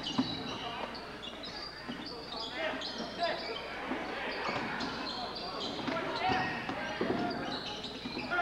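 Basketball being dribbled on a hardwood gym floor, with sneakers squeaking in many short high chirps as players cut and stop, and voices of players and spectators echoing in the gym.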